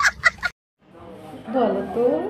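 A small child's rapid, cackling laughter in quick bursts that cuts off about half a second in. After a moment's silence, a voice or music with gliding pitch fades in.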